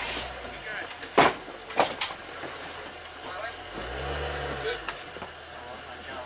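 Two sharp knocks about half a second apart, the first the louder, inside a helicopter's cargo hold. A short low hum follows about four seconds in.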